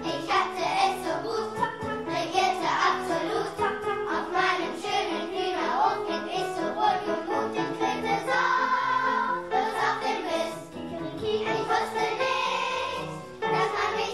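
A children's choir singing a song, with the voices together in chorus.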